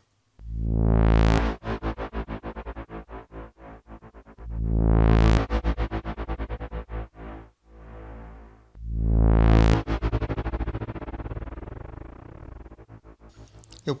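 Ableton Operator synth note sent through a fully wet reverb and an Auto Pan tremolo, played three times about four seconds apart. Each note swells in as a sustained tone, then its reverb tail is chopped into rapid pulses that die away. This is the LFO-like 'ring reverb' effect.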